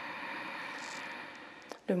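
A woman's slow, deep breath in, a steady airy rush that swells and then fades about a second and a half in, paced as part of a controlled yoga breathing exercise. A small mouth click comes just before she starts speaking at the very end.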